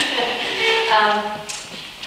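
A woman's voice over a microphone, talking and laughing.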